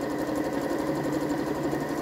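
Janome electronic sewing machine running at a steady speed, stitching a long straight row through denim.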